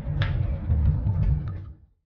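A loud, uneven low rumble with a few light clicks, fading out and cutting off to silence just before the end.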